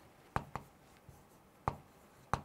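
Chalk writing on a chalkboard: three sharp taps of the chalk against the board, two close together about a third of a second in and one more near the end, over faint room tone.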